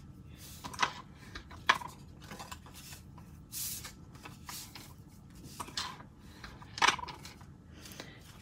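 Black cardstock being handled and folded along its score lines: a few scattered soft paper taps and crackles, with a short sliding hiss about three and a half seconds in.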